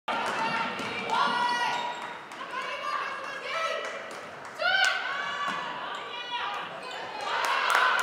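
A basketball is dribbled on a hardwood gym floor during play. Sneakers squeak in short, high-pitched chirps, with players' voices in a large echoing gym.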